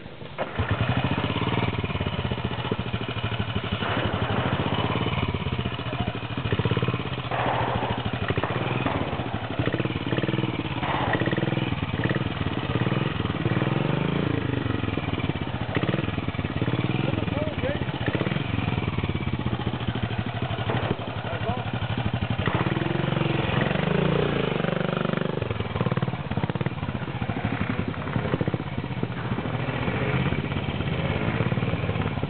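Trials motorcycle engine coming in loudly about half a second in, then running and revving up and down repeatedly as the bike is ridden slowly up a muddy, log-stepped climb.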